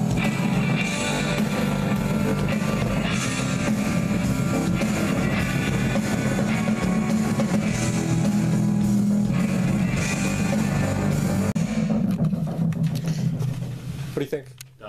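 A rock mix playing back, with electric guitars, a drum kit and a heavy low end. It drops out about two seconds before the end.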